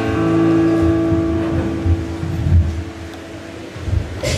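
A held keyboard chord fades away, with low rumbling and bumps on the microphone about halfway through.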